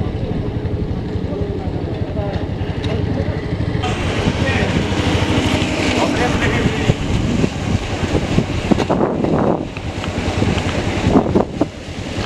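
Engine of a small motor vehicle running while it drives along, with wind rumbling on the microphone.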